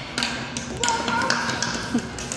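A series of light taps and knocks, about five in two seconds.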